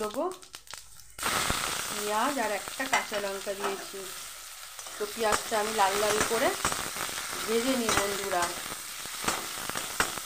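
Sliced onions sizzling in hot oil in a steel wok, with sharp clicks of a spatula against the pan as they are stirred. The sizzle starts suddenly about a second in.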